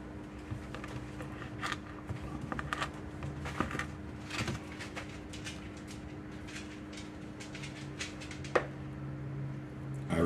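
Wooden spoon stirring crumbly sugar cookie dough in a plastic mixing bowl: irregular soft scrapes and taps, with one sharper tap near the end, over a steady low hum.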